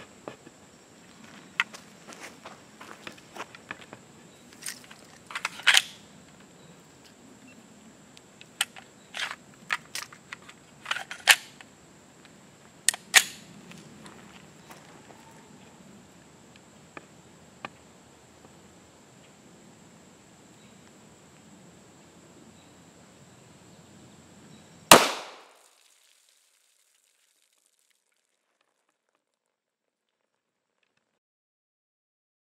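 A single FN Five-seveN 5.7x28mm pistol shot near the end: one sharp crack with a short ring-down. Before it come scattered lighter clicks and pops.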